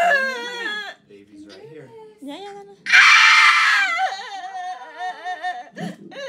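A woman in labour crying out while pushing: a falling wail at the start, then a loud strained scream about three seconds in that lasts about a second and trails off into whimpering moans.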